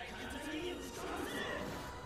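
Anime voice acting: a character speaking a threat in Japanese from the episode's soundtrack.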